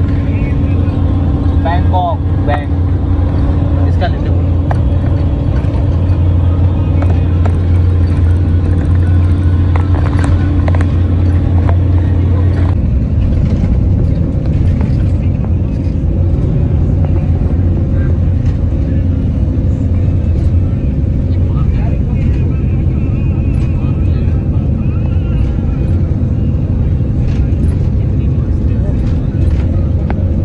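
Cabin noise inside a moving bus on a highway: a steady low engine and road drone whose hum shifts about 13 seconds in, with indistinct voices underneath.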